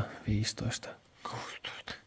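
Quiet, half-whispered speech: a man counting under his breath in Finnish.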